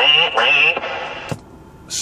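A man laughing, his voice also coming back through the Galaxy DX 959 CB radio's talkback speaker and sounding tinny. The laugh dies away within the first second, and a single click follows about a second later.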